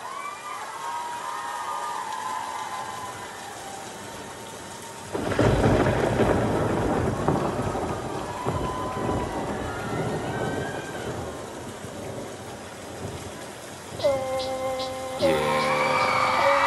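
Recorded rain and thunder played loud over a concert PA as a performance intro: steady rain with a sudden thunderclap about five seconds in that rumbles on and slowly fades. Synth chords of the music come in near the end.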